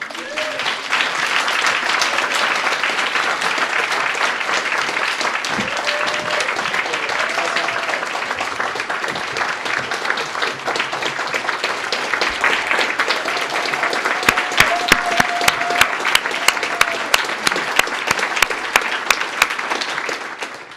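Audience applauding, with some cheering voices. Near the end a few louder claps stand out in a steady rhythm of about two to three a second.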